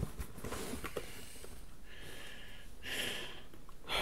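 Faint handling noise as beer cans are taken from a cardboard box: scattered light clicks and rustles, with two short breath-like hisses about two and three seconds in.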